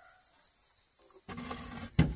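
Wooden boards dragging and scraping over a plank floor as they are turned over, ending in a sharp knock of wood on wood near the end. A steady high insect drone runs underneath.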